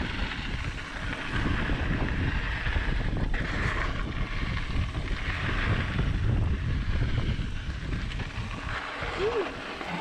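Wind buffeting the microphone of a handlebar-mounted camera on a mountain bike descending a dirt trail, over a steady rumble of tyres rolling on dirt.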